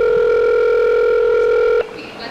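Telephone ringback tone: one steady two-second ring on the line, cutting off sharply. The call is ringing through at the other end and has not yet been answered.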